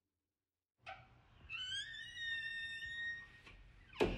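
Near silence for almost a second, a soft click, then a faint high whistle-like musical tone that rises slightly at its start and is held, wavering, for about two seconds before fading.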